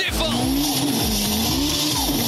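Soundtrack of a TV channel promo: a fast steady beat with a gliding, engine-like tone and hiss laid over it.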